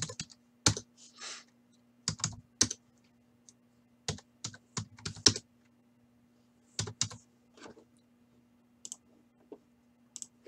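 Computer keyboard typing in short bursts of clicks with pauses between, over a faint steady low hum.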